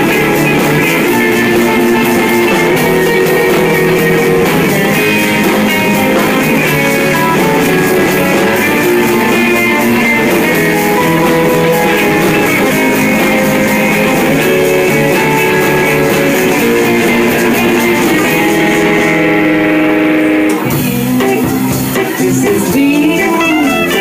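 Psychedelic rock band playing live, electric guitar to the fore, with keyboard, congas and drums. About twenty seconds in, the cymbals drop out briefly and the band shifts into a sparser passage with bending guitar lines.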